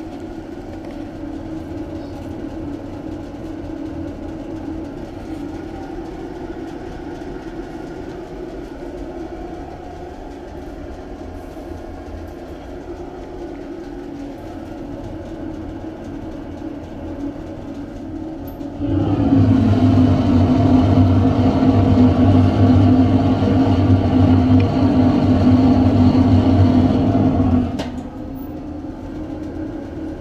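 Homemade waste-oil furnace burning, a steady rumbling roar. About two-thirds of the way through, a louder, deeper hum comes in suddenly and runs for about nine seconds before cutting off just as suddenly.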